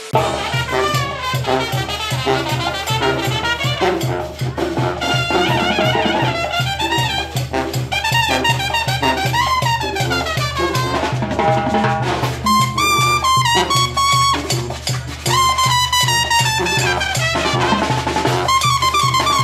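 Latin brass-band music: trumpets and other brass playing a melody over a steady, pulsing bass beat, starting abruptly.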